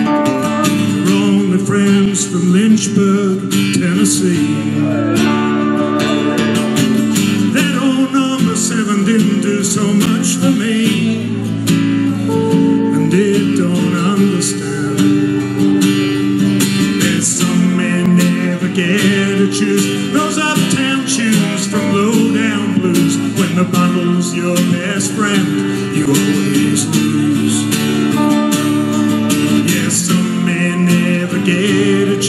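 Live country instrumental: a strummed acoustic guitar under an amplified steel guitar playing lead lines with sliding, gliding notes.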